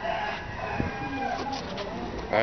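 Rooster crowing: one long drawn-out call that fades out near the end.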